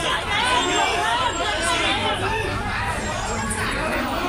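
A crowd of people talking over one another in the street, with several voices at once and no single clear speaker.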